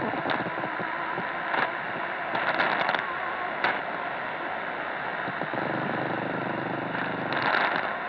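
Portable radio tuned to a weak 567 kHz medium-wave signal in synchronous detection: a steady hiss of band noise, broken by several short bursts of crackling static.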